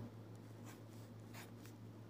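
Faint scratching of a pen on paper as brackets are drawn around a written term, over a low steady hum.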